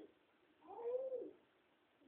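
A single drawn-out vocal call, rising then falling in pitch, about two-thirds of a second long, beginning about half a second in.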